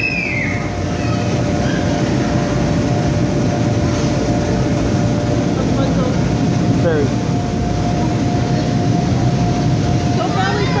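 Steady loud rumble of the electric blowers that keep the inflatable bounce houses and slide inflated, with a faint steady hum through it. A child's voice is heard briefly about two-thirds of the way through.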